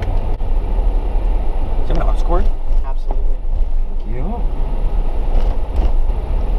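Steady low road and engine rumble of a moving car, heard from inside the cabin, with a few brief murmured words.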